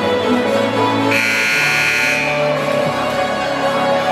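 Basketball scoreboard buzzer sounding once for about a second, about a second in, over music playing in the gym, signalling the end of a timeout.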